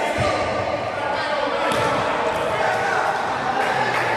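Futsal ball being kicked and bouncing on a hard sports-hall floor, a few sharp strikes about a second or two apart. Players' and spectators' voices echo through the hall.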